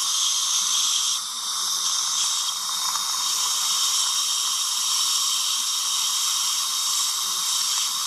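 Dental suction tip in the mouth drawing air and saliva with a steady hiss.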